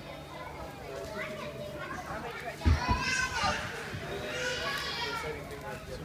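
Children's voices and chatter in the background, with a sudden low thump about two and a half seconds in.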